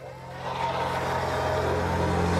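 Power ice auger running and drilling into the ice, a steady motor sound that grows louder over the first second and then holds.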